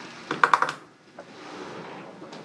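A quick run of clicks on a computer keyboard, bunched about half a second in, then faint room noise.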